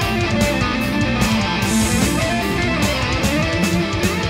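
Heavy metal music: an instrumental passage of electric guitar over drums, with no singing.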